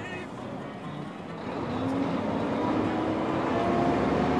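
Tri-axle dump truck's diesel engine heard from inside the cab, pulling harder from about a second and a half in: it grows louder and its steady tone climbs slowly in pitch.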